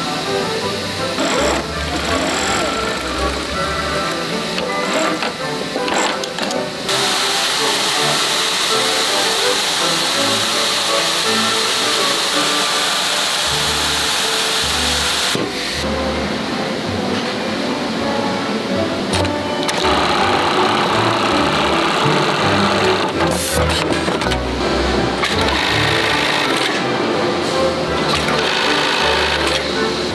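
Industrial sewing machines stitching heavy coat fabric, including lockstitch and buttonhole machines, heard in several short stretches under steady background music.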